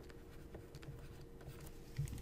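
Faint scratching and light ticks of a stylus writing by hand on a drawing tablet, over a thin, steady background hum.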